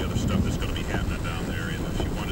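Steady low rumble of a car driving, with indistinct speech over it.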